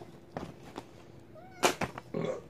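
Kitten giving a brief, faint chirping meow a little past halfway, among a few light clicks, followed near the end by two sharp crackles, the loudest sounds.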